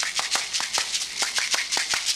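A pair of caxirolas, plastic cup-shaped bead shakers, shaken in a quick, driving maracatu rhythm of about six sharp rattles a second.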